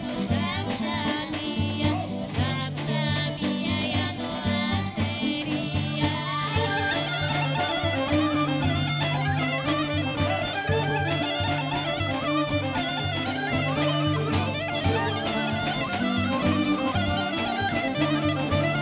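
A live Bulgarian folk band plays a dance tune with a steady repeating bass line. A woman and a girl sing the song for about the first six seconds, then the band carries on instrumentally with fast, ornamented wind-instrument melody lines.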